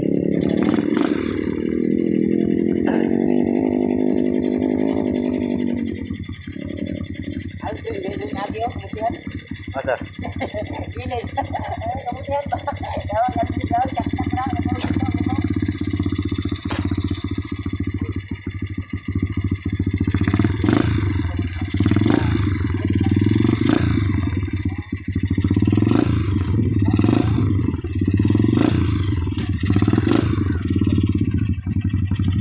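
Dirt bike engine running close by with a steady low note, dropping back about six seconds in, then revved up and down repeatedly from about twenty seconds in.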